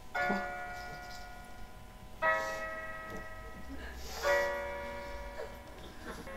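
A Graco Simple Sway LX baby swing's built-in speaker plays an electronic lullaby after its music button is pressed. There are three chiming notes about two seconds apart, each ringing on and fading.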